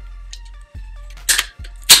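Mossberg 500 pump-action 12-gauge shotgun being racked closed to chamber a short shell: two sharp metallic clacks about half a second apart, the second one louder, as the action closes. Faint background music runs under it.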